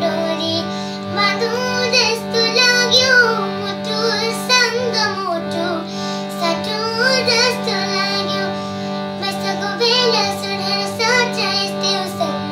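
A young girl singing a melody, accompanying herself on a harmonium whose reeds hold steady chord tones beneath her voice.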